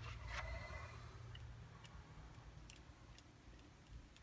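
Near silence: a low hum with a few faint, scattered clicks.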